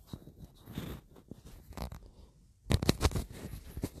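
Handling noise from a clip-on lavalier microphone being moved on a shirt: rubbing, crackling and scattered clicks as it is unclipped and re-clipped, with a louder cluster of scraping clicks about three quarters of the way through.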